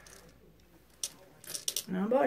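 Jelly beans clicking and rattling in their container as a hand picks through them: a single click about a second in, then a short run of rattles near the end.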